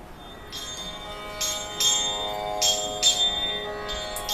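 Small bells jingling in about five sharp, ringing strokes at an uneven beat over a soft, sustained instrumental tone, with no singing, in the accompaniment of a Pinnal Kolattam ribbon-weaving dance.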